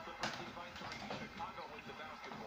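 Basketball game broadcast playing from a TV in the room: commentator's voice and arena sound. There is one sharp knock shortly after the start.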